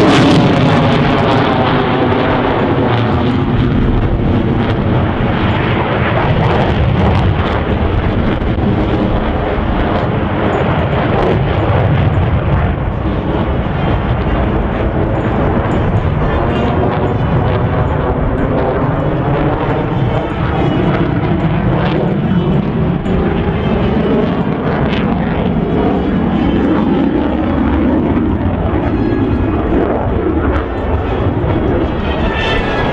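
Twin GE F414 turbofan engines of Boeing F/A-18F Super Hornets flying a display, a loud continuous jet roar. The tone sweeps down in the first seconds as a jet passes, then sweeps up again in the last third as the jets close in.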